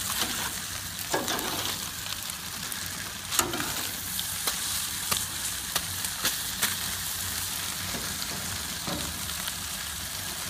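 Trout in foil packets sizzling on a hot barbecue grill: a steady hiss with scattered sharp pops and crackles, the loudest pop about three and a half seconds in.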